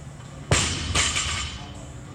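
Two loud impacts about half a second apart, the first sharper, each followed by a noisy clatter that dies away within about a second.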